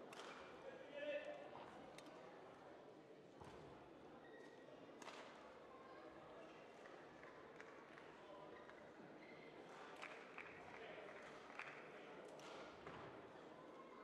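Near silence: the quiet room tone of a large indoor sports hall, with faint distant voices and a few scattered light knocks.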